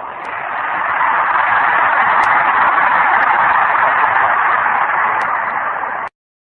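Audience applauding, swelling over the first second, then holding steady until it cuts off abruptly.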